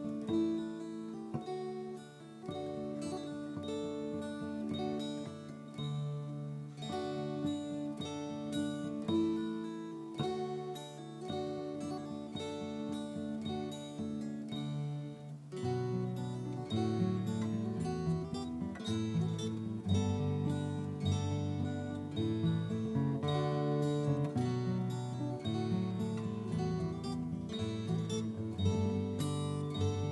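Mountain dulcimer picked together with a fingerpicked steel-string acoustic guitar, playing a tune in the major (Ionian) mode. About halfway through, the lower notes grow fuller.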